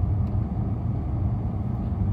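Steady low rumble of a car's engine and road noise heard inside the cabin while driving.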